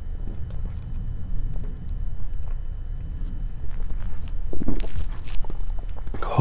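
A man drinking beer from a pint glass, with swallowing sounds, then setting the glass down on the bar near the end.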